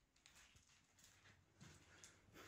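Near silence, with faint, irregular clicks and knocks.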